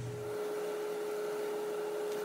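Steady whirring noise with one unchanging hum tone running under it, like a small fan or motor.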